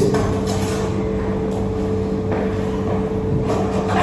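A steady background hum with two held tones over a low even noise.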